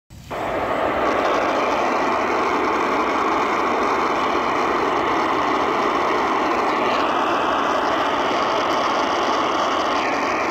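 Steady AM static hiss from the Qodosen DX-286 portable radio's small speaker, tuned to 520 kHz on the medium-wave band with no station audible.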